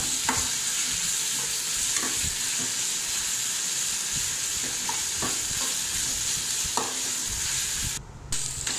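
Chopped onions and green chillies sizzling in hot oil in a metal kadai with ginger-garlic paste, stirred with a metal slotted spatula that scrapes and knocks against the pan now and then over a steady hiss.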